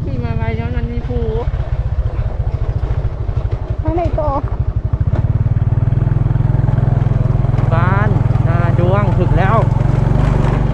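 Motorcycle engine running with wind on the microphone while riding, a steady low rumble that grows louder about halfway through. A voice is heard briefly in drawn-out calls at the start, around four seconds in, and near the end.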